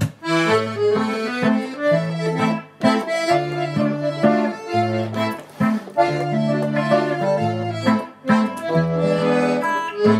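Diatonic button accordion (durspel) playing an instrumental interlude: a melody over held chords and alternating bass notes in a steady folk rhythm, with an electric guitar accompanying.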